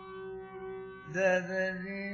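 Carnatic classical music: a steady tambura drone, with a melodic phrase gliding up in pitch entering about a second in.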